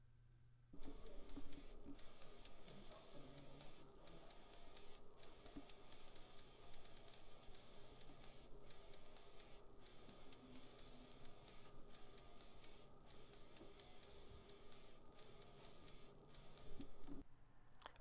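Faint music from a WAV file played by an Arduino through a small speaker driven straight from a pin with no amplifier, so it is quiet and hard to hear. It starts about a second in.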